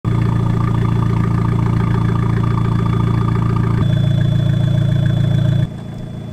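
Fiat 500 hatchback's engine idling steadily with a low hum. The sound shifts slightly a little before four seconds in and drops suddenly to a quieter hum near the end.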